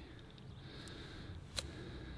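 A golf iron striking the ball on a short chip shot: one sharp, brief click about a second and a half in, over faint outdoor background.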